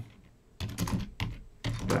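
Computer keyboard typing: a short run of separate keystrokes, starting about half a second in.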